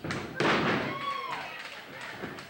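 A wrestler's body landing hard on the ring mat: one loud thud about half a second in, with smaller knocks around it, amid shouting voices from the crowd.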